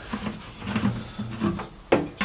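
A plastic pump dispenser rattling and knocking as it is handled and drawn up out of a plastic chemical drum, with a sharp click near the end, over a faint low steady hum.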